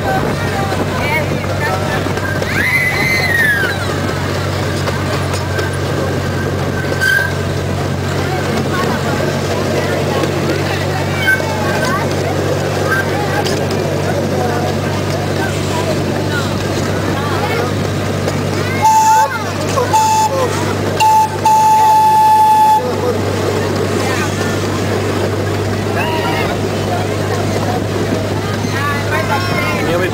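Miniature park train running with a steady low drone as the cars roll along. About two-thirds of the way through, the train's horn gives three short toots and then one longer blast.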